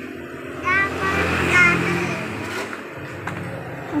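A motor vehicle passing on the street, its low engine sound swelling about a second in and then fading, with a brief voice over it and a single click near the end.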